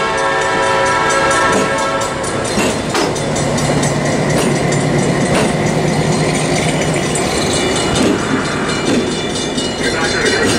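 EMD SW8 diesel switcher's eight-cylinder 567 engine running with a steady low hum as the locomotive rolls past close by, with wheel and rail noise and a few clicks. A train horn sounds a steady chord for about the first two seconds.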